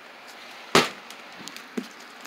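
A single sharp snap or click about three-quarters of a second in, then a few faint ticks.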